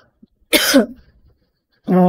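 A woman coughs once about half a second in, then makes a short, steady voiced hum near the end as she clears her throat.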